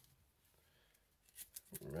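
Near silence, then a few faint clicks of baseball cards being handled and set down on the table about one and a half seconds in.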